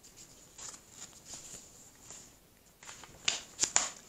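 A paperback picture book's page being turned by hand: soft paper rustling, then several sharp crackles and clicks about three seconds in as the page is handled and flipped over.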